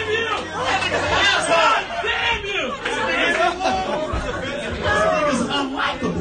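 Indistinct, overlapping talk and chatter from people in a comedy club, with no clear words. Low music fades out about a second in.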